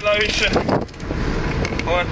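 Short calls of a person's voice, one right at the start and a rising one near the end, over a steady rushing background noise.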